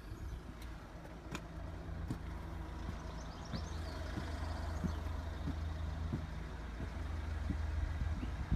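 Footsteps on a concrete yard, about three every two seconds, over a steady low rumble, with a few clicks and faint bird chirps.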